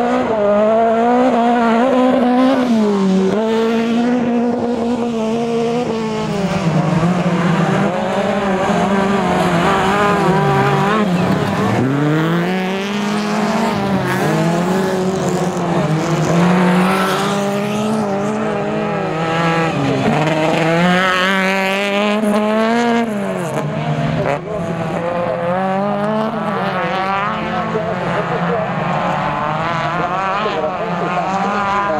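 Autocross race car engines revving hard on a dirt track. The pitch climbs and drops over and over, every couple of seconds, through gear changes and corners.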